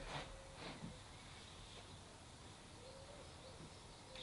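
Near silence: faint outdoor room tone, with a couple of faint, brief soft sounds in the first second.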